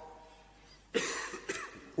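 A person coughing about a second in, after a short near-silent pause, with a smaller second cough about half a second later.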